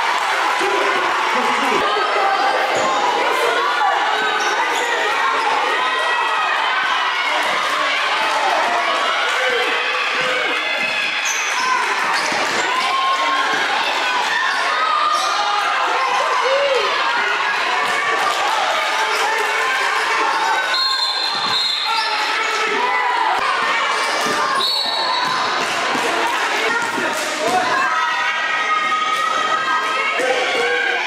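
A basketball bouncing on a hardwood gym floor in a reverberant hall. Many overlapping crowd and player voices talk and shout throughout, with sharp knocks and impacts scattered through.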